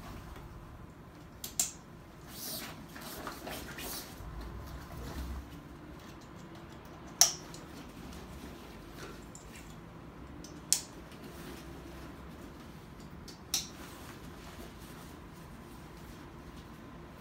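Stiff waterproof dry-bag material being handled and rolled, rustling and crinkling, with a few short sharp clicks spread through.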